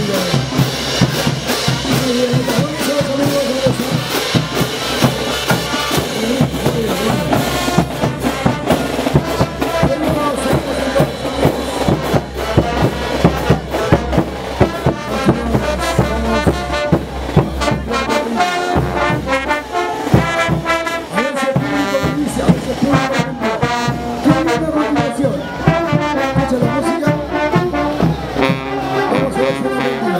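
Live marching brass band playing caporales music: trumpets, trombones and sousaphones over bass drums and hand cymbals striking a steady beat.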